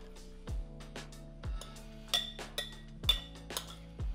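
A metal spoon clinking against a glass mixing bowl as diced avocado is tossed, several light clinks mostly in the second half, over background music with a soft, slow beat.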